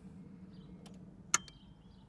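Mitsubishi 2.8 diesel's glow plug relay clicking in once, sharply, about a second and a half in as the ignition is switched on, with a couple of fainter ticks around it. The relay is energising to power the glow plugs.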